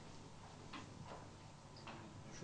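Near silence: quiet studio room tone with a few faint clicks.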